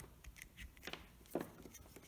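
Faint handling noise: a few soft clicks and rustles as a wired plug and motor leads are picked up by hand.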